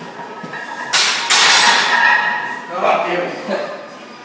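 A loaded barbell racked in a steel power rack about a second in: a sudden clank with a second of metallic rattle and ringing from the plates, then excited voices.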